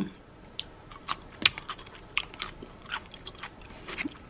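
A person chewing crunchy food close to the microphone: a string of irregular crunches and clicks.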